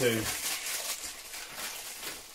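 Plastic bags crinkling and rustling as vinyl figures are unwrapped by hand, a soft irregular rustle.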